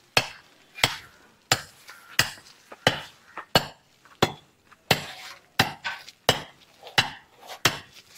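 Laterite block being trimmed with a double-bladed laterite-cutting axe: about a dozen sharp, evenly spaced blows, roughly three every two seconds.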